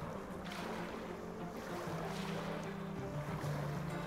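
Sea ambience sound effect of waves and wind under a naval fleet scene, with low background music holding sustained notes.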